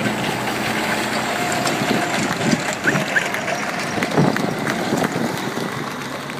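Steady rushing outdoor noise, with a few short knocks and faint chirps in the middle of it.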